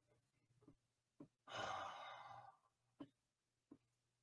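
A man sighs once, a long breathy exhale lasting about a second, with a few faint short clicks before and after it.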